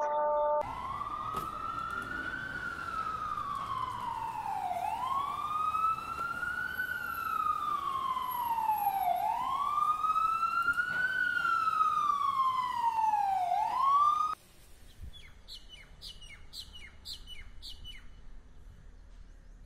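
A siren wailing, its pitch rising and falling slowly about three times, roughly four seconds per rise and fall, then cutting off abruptly. Faint bird chirps follow.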